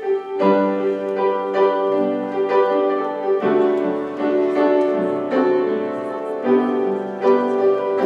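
Piano playing a slow passage of sustained chords, with one note repeated steadily against the changing harmony.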